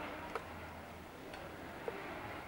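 A few sharp clicks, about three, spaced roughly a second apart, over a steady low background noise.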